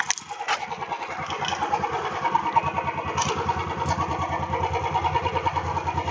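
Royal Enfield Bullet 350 BS6's air-cooled 350 cc single-cylinder four-stroke engine, heard at its stock exhaust silencer, firing up on the kick-start and settling into a steady, rhythmic idle.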